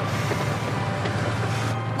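A car driving in the rain: a steady low engine hum with a haze of road and rain noise.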